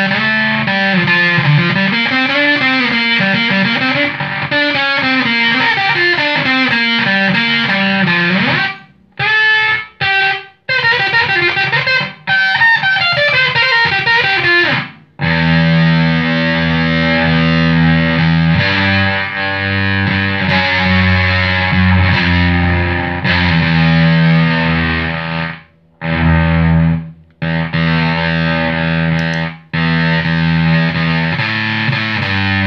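Electric guitar played through a home-built Woolly Mammoth–style fuzz pedal with Russian germanium transistors, heavily distorted. It begins with single-note runs, then a few short stabs with silent gaps, and from about halfway long held chords with a heavy low end, cut off briefly twice near the end.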